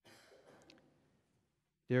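A man's faint breath, a sigh close to the microphone, fading away over about a second, followed by the start of his speech near the end.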